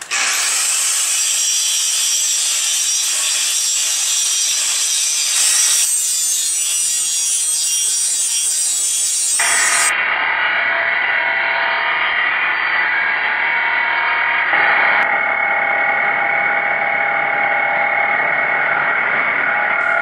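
A 4.5-inch Milwaukee angle grinder grinding metal steadily for a spark test: gray cast iron in the first half, then low carbon steel for comparison. The sound changes character abruptly about six seconds in, again just before halfway, and about fifteen seconds in.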